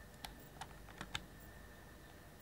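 Four faint, short clicks within about a second, from handling a gas blowback airsoft pistol and a trigger-pull gauge between trigger-pull measurements.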